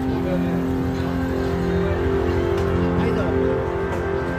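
Busy shopping-street ambience: music playing from shops with steady held tones, a crowd of voices, and a motor scooter passing close at the start.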